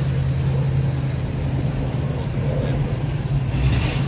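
A car engine idling with a steady low hum.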